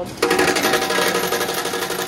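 Token exchange machine dispensing arcade tokens: a quick, even run of metal tokens clattering out many times a second over a steady motor hum, starting a moment in and cutting off suddenly.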